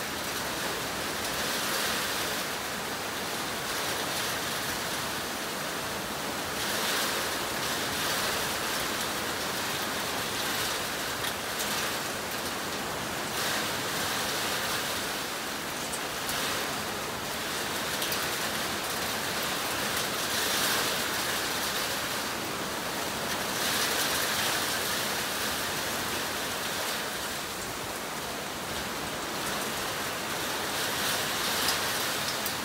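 Heavy rain pouring down in a windy storm, a steady hiss that swells and eases every few seconds.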